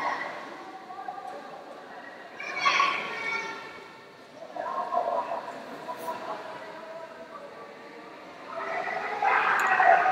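Voices calling out across a sports hall: a drawn-out shout about two and a half seconds in, another around five seconds, and louder calling building near the end, over steady hall noise.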